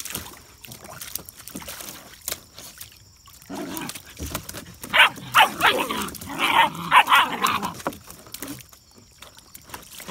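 German Shepherd puppies yapping and barking at each other in a string of short, sharp yips, starting a few seconds in and loudest in the middle before dying away: the squabble of a puppy guarding a water-filled kiddie pool from its littermates.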